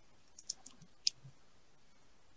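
A few faint, short clicks in a quiet pause, the sharpest about a second in.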